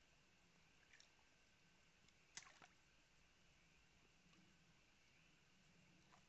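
Near silence: a faint steady hiss, with a few soft clicks about a second in and a brief cluster of sharper clicks about two and a half seconds in.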